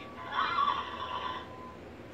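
Plush bouncing horse toy's electronic sound effect: a recorded horse whinny from its small built-in speaker, lasting about a second and fading out after about a second and a half.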